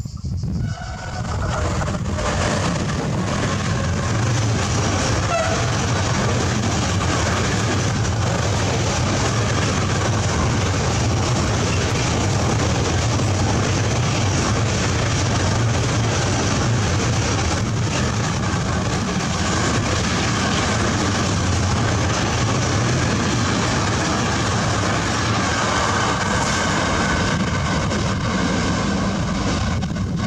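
Long container freight train passing close by, its wagon wheels rolling over the rails in a steady, loud rumble that builds within the first second or two and then holds.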